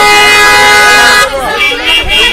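A vehicle horn sounds one loud, steady blast lasting just over a second, then stops.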